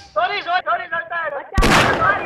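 A man's voice sounds for about a second and a half, without clear words. Then a sudden, loud bang like a gunshot or blast lasts under half a second near the end.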